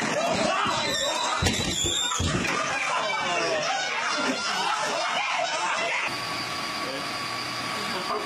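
Excited yelling, screaming and laughter from a couple of people as a man is thrown off a home treadmill, with two heavy thumps about one and a half and two seconds in from his body hitting the machine and floor. About six seconds in, the sound cuts to a steady hum with a faint high whine.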